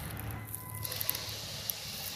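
Steady low outdoor background rumble, with a faint click about one and a half seconds in.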